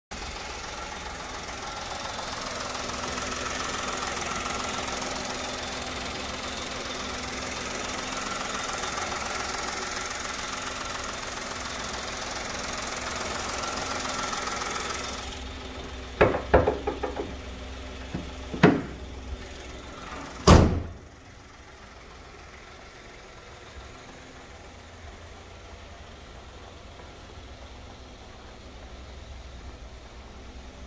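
2017 Kia Morning's engine idling with the bonnet open, a steady hum and hiss. About fifteen seconds in the hiss drops away, a few clanks and knocks follow as the bonnet is handled, and at about twenty seconds the bonnet shuts with one loud thump, leaving the idle quieter and muffled.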